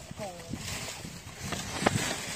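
Footsteps on dry leaf litter, rustling irregularly. A short voice-like sound falls in pitch about a quarter second in, and a single sharp knock comes near the end.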